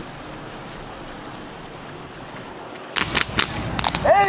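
Steady hiss of wind and sea on open water. About three seconds in it cuts abruptly to a louder outdoor scene with several sharp knocks.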